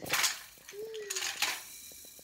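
Hard plastic and wooden toys clattering and rattling as a toddler handles them, loudest at the start and again just past a second in, then a few light knocks.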